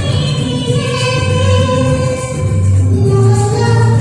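A woman singing live over a karaoke backing track through a PA system, holding long notes over a steady beat.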